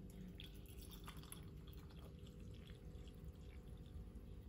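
Faint trickle of hot water poured from a kettle into a glass over a tea bag, with light drips.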